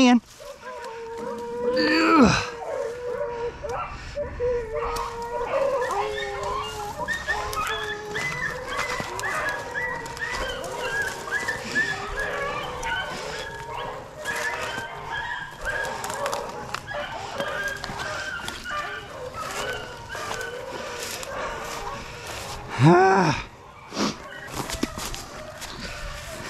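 Hunting dogs whining and yipping in many short, wavering cries, with a louder call about two seconds in and another near the end.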